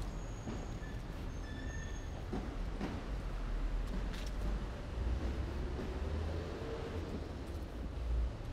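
City street ambience: a steady low rumble of traffic, with a vehicle engine note slowly rising and falling from about five seconds in. A few short high chirps sound in the first two seconds.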